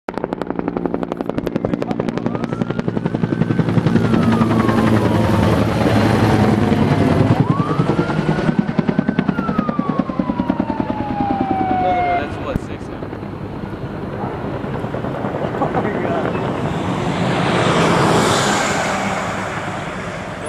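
Low-flying helicopter with its rotor beating rapidly, fading after about twelve seconds. An emergency siren wails twice over it, each time rising and then slowly falling. Near the end a louder rush swells and passes as a vehicle goes by close.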